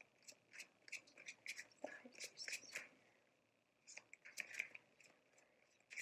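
Tarot deck being shuffled by hand: cards sliding and snapping against each other in quick, faint clicks. The shuffling pauses about three seconds in, then resumes in a short cluster and a few scattered clicks.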